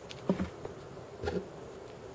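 Faint handling of wooden beads on elastic string: two light knocks about a second apart as the beads are picked up and threaded.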